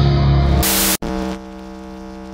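Live rock music breaks off about half a second in into a burst of loud static hiss. After a sudden dropout at one second, a steady electrical hum with hiss runs on, quieter, as a noise effect under the end card.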